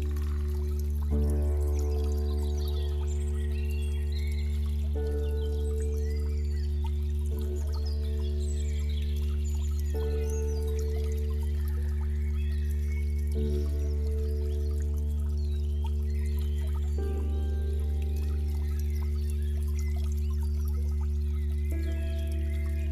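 Slow ambient music of sustained chords over a deep bass drone, the chord changing every three to four seconds, laid over trickling stream water with high bird chirps.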